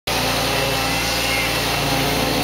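A concrete pump's engine running steadily, a continuous even drone with a constant pitch.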